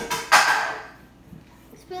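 A short, noisy sniff as a child smells the mixed shake held out in a plastic bowl, followed by a quiet stretch.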